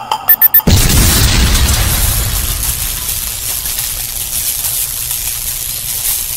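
Cinematic intro sound effect: a few quick sharp hits, then a heavy boom under a second in whose low rumble and hiss hold on for several seconds.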